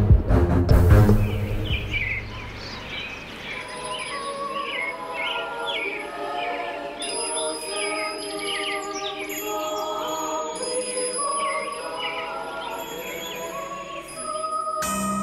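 Loud theme music ends in the first second or so. Then small birds chirp over and over above soft, sustained music.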